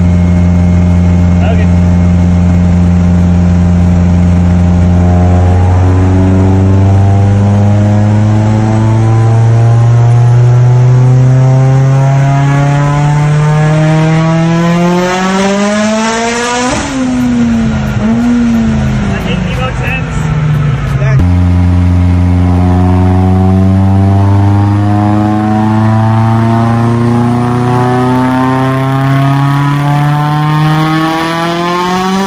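Mitsubishi Lancer Evolution X's turbocharged four-cylinder engine at full throttle, its pitch climbing steadily for about ten seconds to high revs. It then comes off the throttle, and the revs fall unevenly with a ragged sputter. After a sudden break the engine starts another steady climb in revs.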